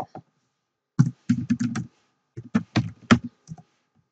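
Typing on a computer keyboard: two quick runs of keystrokes, one starting about a second in and another soon after, roughly a dozen keys in all.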